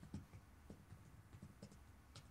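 Faint, irregular clicking of typing on a MacBook laptop keyboard, several keystrokes a second.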